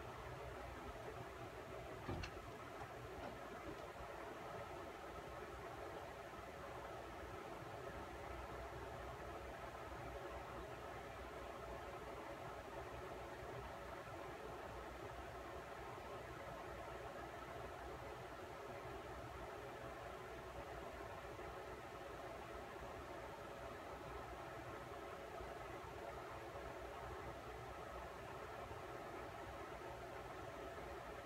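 A steady, low-level mechanical hum, unchanging throughout, with a single brief click about two seconds in.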